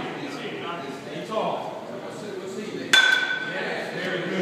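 A metal baseball bat striking a ball once, about three seconds in: a sharp crack followed by a high ringing ping that fades within about half a second. Voices murmur in the room before the hit.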